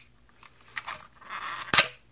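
Plastic quadcopter battery being forced out of its bay: about a second of scraping and straining plastic, then one loud, sharp snap near the end as it pops free. It was pulled out without the release button pressed, and the snap made the owner fear he had broken it.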